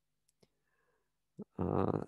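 A few faint short clicks in near silence, then a man's voice begins speaking about one and a half seconds in.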